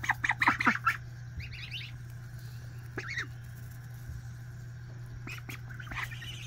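White domestic goose close to the microphone, giving a quick series of short honking calls in the first second. A few high, thin peeps from young birds follow about a second and a half in, and there is one more short call about three seconds in.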